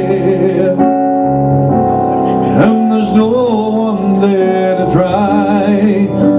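A man singing a slow ballad live with held, wavering vibrato notes, accompanied by chords on a Roland FP-4 digital piano.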